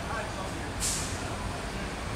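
Steady low rumble of street traffic with faint voices, and one short hiss just under a second in.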